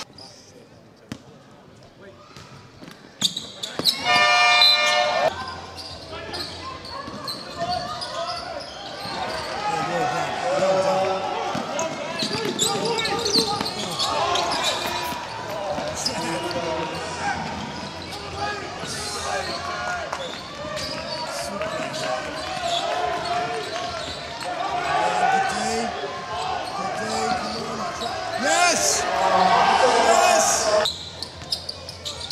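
Basketball game sounds: a ball bouncing on the court amid a crowd's mixed voices, with a game buzzer sounding for about a second roughly four seconds in.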